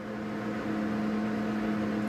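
A steady low hum from a running machine or appliance, holding one pitch throughout.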